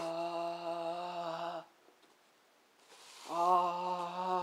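A man's voice singing two long held notes at a steady pitch, chant-like. The first ends about a second and a half in, and the second begins near the end.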